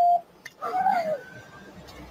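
A short, steady electronic beep that cuts off just after the start, followed by a man's voice letting out a falling 'ah'.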